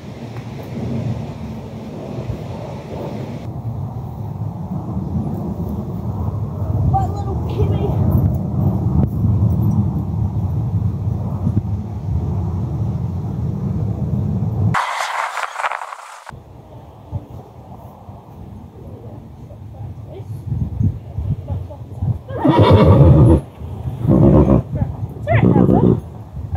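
Wind buffeting the microphone as a low rumble through the first half. Near the end a horse whinnies loudly, in a few pulsing bursts.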